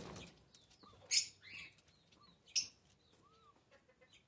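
A rusty-margined guan (jacupemba) briefly flapping its wings at the start. Then come two short, sharp, noisy bursts about a second and a half apart, with faint soft chirps in between.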